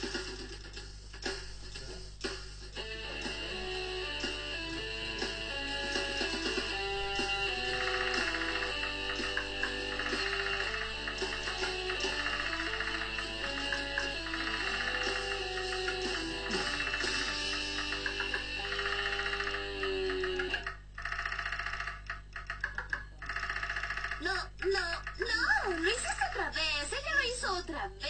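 A cartoon band's rock music played on electric guitar and drums, with sustained melody notes and a steady beat, breaking off about 21 seconds in.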